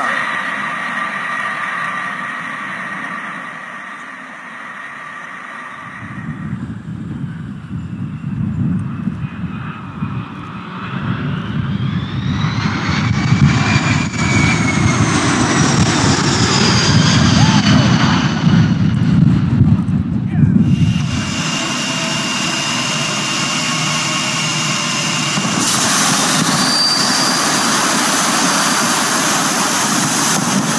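Jet engines of a Lockheed C-5 Galaxy at takeoff power, a steady high whine, for the first few seconds. Then a DC-10 air tanker passes low: a heavy jet rumble with a whine that rises and then falls, cutting off abruptly about twenty seconds in. After that an MD-11's overwing emergency slide inflates, a steady rushing noise that grows louder a few seconds before the end.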